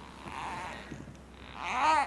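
Young baby cooing: a soft breathy sound, then near the end a louder drawn-out coo that rises and falls in pitch, a fussy sound that her mother takes for hunger.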